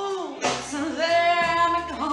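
Live band music: a singer holds long notes with a slight vibrato over keyboard, bass and drums, a new sung phrase starting about half a second in.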